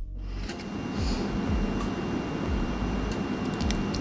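Steady hiss with a low rumble, under a faint music beat of low thuds about twice a second, with a few light clicks.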